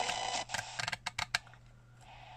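Plastic slide switch on an XHDATA D-368 radio clicking through its detents: about seven quick clicks in under a second. The radio's static hiss drops away just before the clicks begin.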